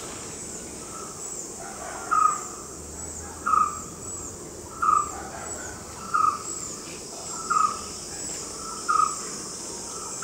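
A bird calling: one short note repeated evenly about every second and a third, starting about two seconds in, over faint high chirps that keep repeating in the background.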